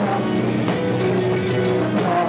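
Live rock band playing electric guitars with drums, loud and steady, with notes held for a moment at a time.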